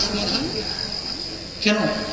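A steady high-pitched whine runs through a pause in a man's speech over a microphone; his voice comes back with a single word near the end.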